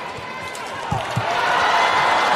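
Badminton match in an arena: two dull thuds of play on court about a second in, a quarter second apart, then arena crowd noise swelling.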